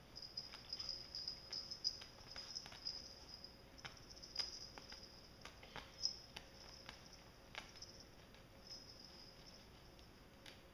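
Faint, irregular light clicks and scratches of cats' claws and paws on a woven sisal scratching mat as two cats wrestle on it, quick and frequent in the first few seconds, then sparser. A steady faint high-pitched hiss runs underneath.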